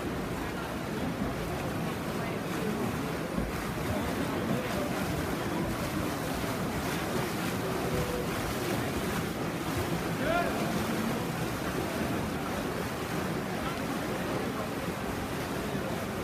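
Steady wash of splashing water from swimmers racing butterfly, with a background of voices.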